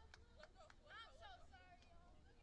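Near silence with faint distant women's voices calling out on the pitch, loudest about a second in, and a few light clicks.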